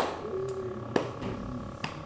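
A few short, sharp taps in a room: the loudest right at the start, then fainter ones about half a second and one second in, and another near the end.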